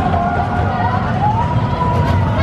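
Arrow mine train coaster running along its track close by, a heavy low rumble of the cars and wheels. A high, drawn-out squeal that wavers and rises in pitch about a second in is held over the rumble.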